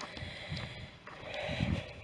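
Footsteps on a stony dirt track, soft thuds about a second apart, heard from a handheld camera carried by the walker.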